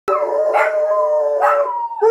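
A Jack Russell terrier and a kelpie howling together: long, held howls at two different pitches overlapping, the higher voice sliding down a little near the end.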